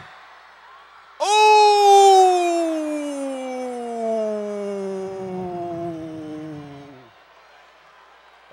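An announcer's long, drawn-out "Ohhh!" into a microphone, starting about a second in and sliding slowly down in pitch for some six seconds before trailing off.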